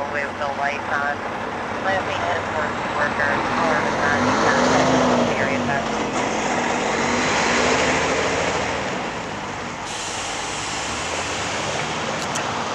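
Road traffic: motor vehicles pass nearby, their engine and tyre noise swelling and fading, loudest about four to five seconds in and again near eight seconds.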